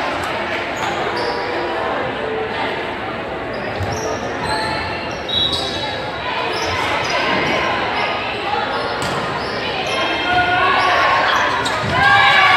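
Volleyball rally on a gym floor: sneakers squeaking in short high chirps, the ball being struck, and players' and spectators' voices, all echoing through the large hall. The voices rise near the end.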